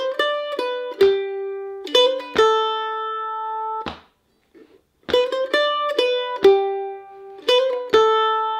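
F-style mandolin picking a short phrase of a jig in G, a run of single notes with a quick hammer-on and pull-off, ending on a held note. The phrase is played twice, with a short pause between.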